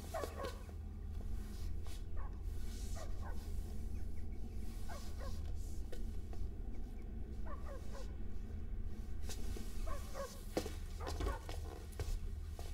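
Faint, short animal-like calls coming irregularly, sometimes in pairs, over a low steady hum.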